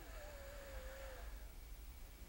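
A pause with only a low hum, plus one faint thin tone that slides down in pitch and holds for about a second before fading.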